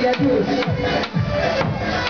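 Davul, a large double-headed bass drum, beaten with a heavy mallet at about two strokes a second, with a wavering reed-like melody held over it: davul-zurna folk music for a bar dance.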